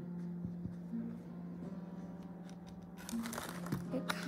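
Paper towel crinkling as it is pressed and handled on a tabletop, louder near the end, over a low held tone that shifts pitch a few times.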